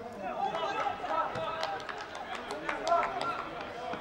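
Several men's voices shouting at once on an open football pitch, the kind of calls that follow a goal, with a few sharp knocks mixed in.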